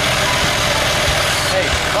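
John Deere 2040 tractor's diesel engine running steadily at idle.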